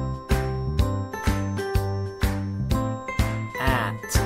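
Bright children's background music with a steady beat and tinkling bell-like notes. Shortly before the end a brief wavering pitched sound rises and falls over the music.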